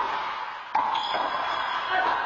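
A rubber handball smacking off hands and the court wall during a rally, with a sharp hit about three-quarters of a second in that rings and echoes around the enclosed court.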